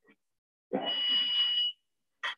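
A single steady, high electronic beep lasting about a second, from cardiac cath-lab equipment during the angiogram, with a muffled low noise under it.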